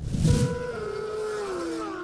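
An edited transition sound effect: a sudden whoosh, then a sustained tone that slides slowly down in pitch.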